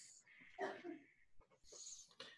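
Near silence between a narrator's sentences, holding only faint breath sounds: a soft breath about half a second in and a short inhale near the end.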